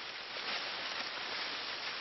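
Tall maize plants rustling steadily as a person pushes in among the stalks, the leaves of the drying crop brushing and scraping against each other and against his clothes.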